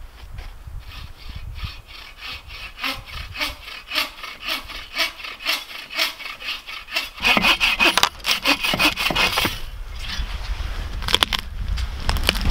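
A hand saw cutting through a dead fallen log in quick, even back-and-forth strokes, about three or four a second. The strokes grow louder and harsher about seven seconds in.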